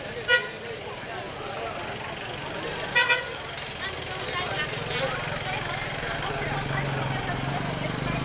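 Vehicle horn giving short beeps: a single brief beep about a third of a second in, then a louder double beep about three seconds in, over crowd chatter. A low engine hum grows louder near the end.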